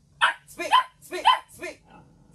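Two-month-old border collie puppy barking on the command to speak: four short, high yaps in quick succession, the last one fainter.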